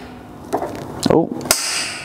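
A Dzus clip pushed into a drilled hole in a fiberglass dash panel, clicking into place about one and a half seconds in with a brief rasp after it.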